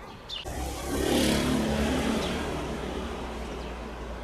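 A motor vehicle passing by: its noise swells about half a second in, is loudest around a second in, then slowly fades away.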